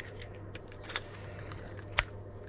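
Small plastic clicks and taps of 15 mm push-fit elbows being handled and tightened onto a shower point's fittings, with one sharper click near the end.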